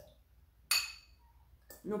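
A single bright clink of metal kitchen tongs against a dish about two-thirds of a second in, with a brief ring.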